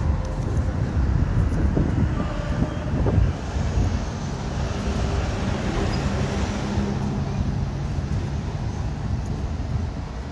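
City street traffic: cars passing and engines running, heard as a steady low rumble.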